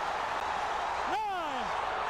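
Arena crowd roaring steadily just after a heavyweight knockout, with one long falling shout from a man's voice about a second in.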